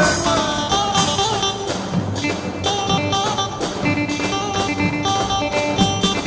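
Dance music from a live band: a melodic instrumental line with a plucked-string sound, played steadily with no singing.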